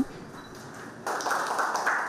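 Room noise from the ceremony footage: a low hiss that about a second in becomes a louder steady haze with faint voices in the background.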